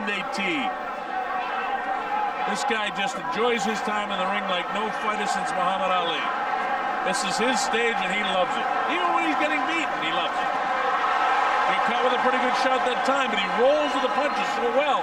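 Boxing broadcast commentary: a man talking steadily over steady background noise.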